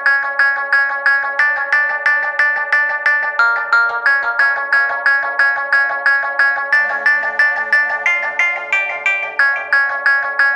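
Background music: a fast picked melody of short, evenly spaced notes, about five a second, stepping up and down in pitch.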